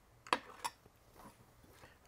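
Two short metal clinks about a third of a second apart near the start, from a knife and fork being fumbled and nearly dropped, then a few faint ticks.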